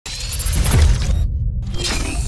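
Podcast intro logo sting: a sound-design hit with a deep low rumble under a dense high layer. The high layer cuts out for a moment just past halfway, then comes back.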